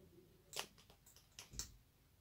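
Near silence broken by a few soft, sharp clicks: one about half a second in and two more close together about a second later.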